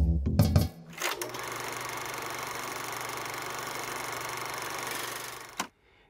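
A music cue ends within the first second. Then a steady, fast mechanical clatter, as of a small machine running, lasts about four seconds and cuts off suddenly.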